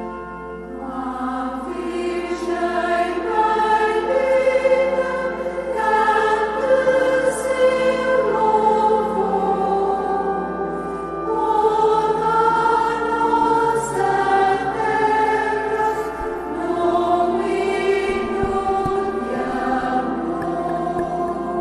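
A choir singing slow sacred music in phrases of a few seconds, with long held notes and short breaks between phrases.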